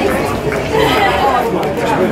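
Indistinct chatter of several people talking at once, close to the microphone, with no clear words.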